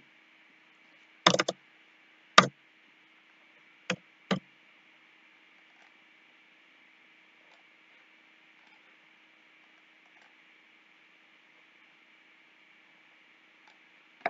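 Four clicks from a computer keyboard and mouse in the first four and a half seconds, the last two close together. After them there is only faint steady hum and hiss.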